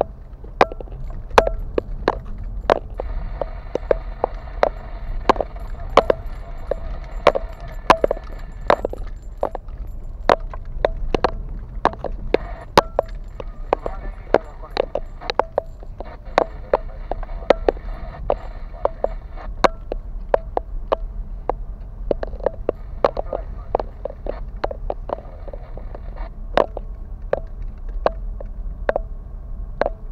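A car's suspension and cabin knocking and rattling over a potholed road: irregular sharp knocks, several a second, over a steady low road rumble.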